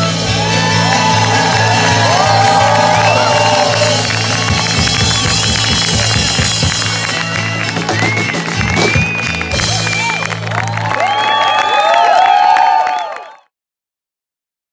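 Live band ending a song on a held chord, with a steady bass under it, while the audience cheers, whoops and applauds. The sound cuts off suddenly near the end.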